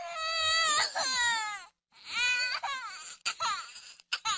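A baby crying: a long, high wail whose pitch falls away, then a second falling cry and shorter ones near the end, with brief breaks for breath between them.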